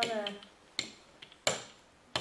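A hand brayer rolled over a thin metal sheet glued onto a wooden shape, giving a few sharp clicks: a light one just under a second in and a louder clack about a second and a half in.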